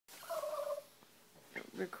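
A small Chihuahua–miniature pinscher mix dog gives one short, high-pitched whine that wavers slightly and lasts about half a second.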